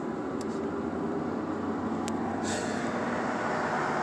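Steady low hum of a car heard from inside its cabin, slowly growing a little louder, with a couple of faint clicks.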